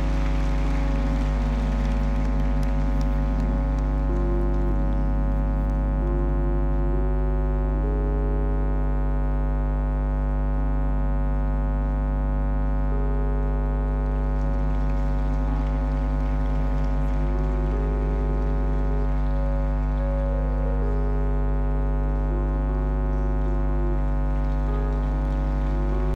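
Keyboard playing slow, sustained organ-like chords over a steady low bass note, the upper notes changing every second or two. Congregation applause fades out during the first few seconds.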